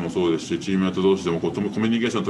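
Speech only: a man talking steadily in Japanese.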